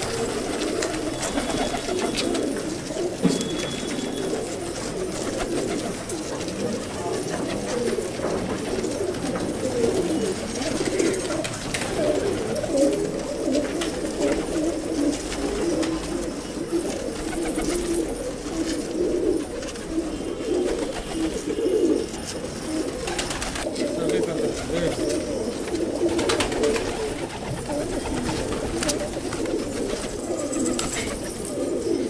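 A flock of domestic fancy pigeons cooing, many low coos overlapping into a continuous burbling chorus.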